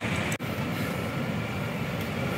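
Steady city street background noise with a low traffic rumble, coming in suddenly with a brief dropout just after.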